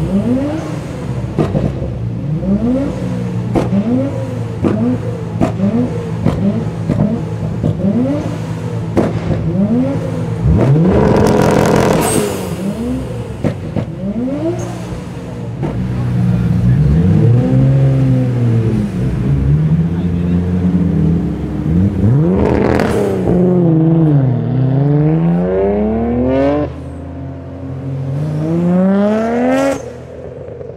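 Nissan Skyline R33 GT-R's tuned RB26DETT twin-turbo straight-six, with a titanium exhaust, revved in quick repeated blips while standing still, with a loud burst about eleven seconds in. It is then held at steady revs for several seconds, and after that it revs up and down in long rising and falling sweeps.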